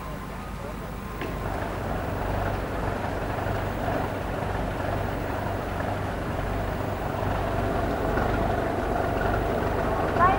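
A steady low engine rumble with outdoor background noise, growing louder from about a second in.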